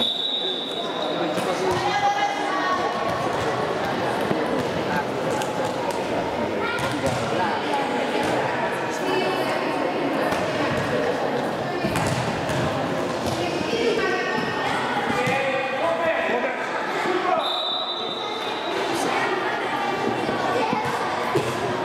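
A handball bouncing on the hard floor of an echoing sports hall, over a steady mix of children's voices and shouts. A short, high referee's whistle blast sounds at the start and again near the end.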